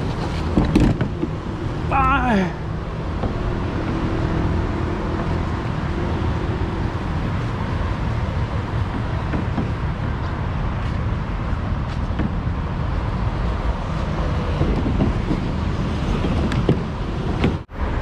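Steady street and road-traffic noise, with a short call from a man's voice about two seconds in.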